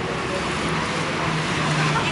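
Motor vehicle engine running with a low steady hum that grows louder toward the end, over a wash of roadway traffic noise, with faint voices.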